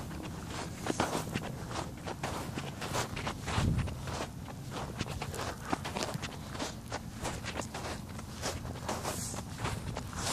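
Footsteps of a person walking, a run of short steps throughout. A low thud stands out about three and a half seconds in.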